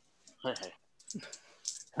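A handful of light clicks from a computer, in quick succession about a second in, just after a brief spoken word.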